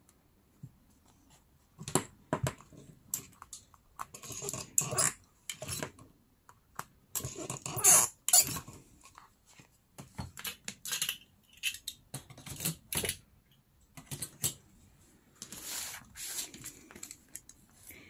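Paper-covered journal covers being handled on a wooden table: irregular rustles of paper and card with light taps and knocks, the loudest pair about eight seconds in.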